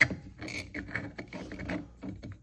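Hard 3D-printed plastic parts of a candy dispenser knocking and scraping together as they are handled and turned by hand, with a sharp click at the start and a run of small irregular clicks after it.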